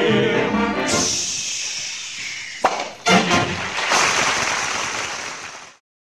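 Male vocal quartet and orchestra hold the song's final chord for about a second, then studio-audience applause follows, with two sharp hits about halfway through. The applause fades and the recording cuts out just before the end.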